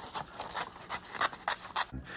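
Scissors cutting a sheet of paper, a quick run of short, crisp snips, about five a second.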